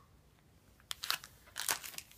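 Crinkly plastic packaging being handled, with a few sharp crackles about a second in and again near the end.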